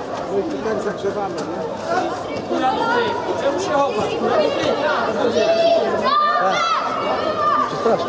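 Many voices of children and adults shouting and chattering over one another, with a burst of high-pitched shouts about six seconds in.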